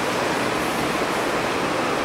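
Steady, even hiss of background noise with no other sound on top.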